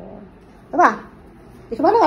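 A small child's brief high-pitched squeal a little under a second in, with more voice sounds starting near the end.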